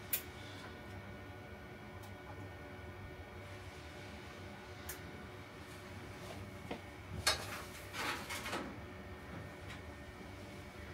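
Network patch cables being handled in a cabled rack: a sharp click right at the start, a few single clicks, and a burst of clicking and rustling about seven to eight and a half seconds in, over the steady hum of the rack's running equipment.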